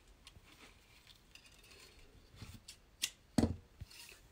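Thin bow wire being snipped to length with a cutting tool: faint handling clicks and rustles, then a few short, sharp snips near the end, the loudest about three and a half seconds in.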